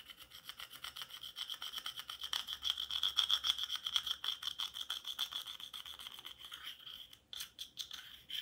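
Pressed eyeshadow powder being scraped out of its compact with the tip of a pen, in rapid back-and-forth strokes that give a steady, scratchy rasp. The scraping is loudest in the middle and breaks into a few separate scrapes near the end.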